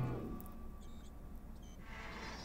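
Faint movie soundtrack playing: quiet background music and ambience, with a short falling glide in pitch right at the start.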